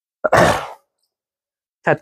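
A person's short breathy exhale close to the microphone, about a quarter of a second in and lasting about half a second, in otherwise dead silence; a man starts speaking near the end.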